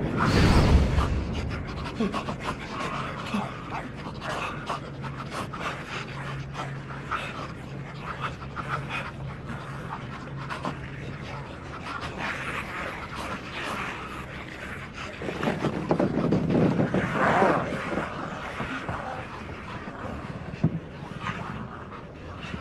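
Ragged, rasping breathing and growls from the infected passengers. A low steady hum runs through the middle, and the breathing swells louder about three-quarters of the way through.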